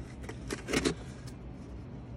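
Cardboard packaging handled as a small shipping box is lifted off: a brief cluster of cardboard scrapes and clicks about half a second in, then only light handling noise.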